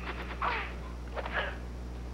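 Steady low electrical hum, with two faint brief whooshing sounds about half a second and a second and a half in.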